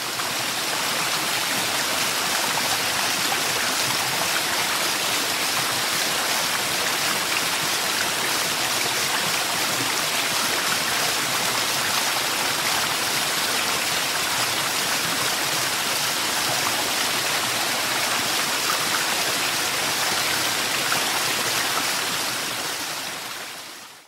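Running water, a steady stream-like rush with no pauses, fading in at the start and fading out near the end.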